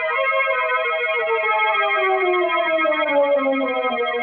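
Organ music bridge from a 1940s radio drama: a held, wavering chord over a bass note that slides slowly downward.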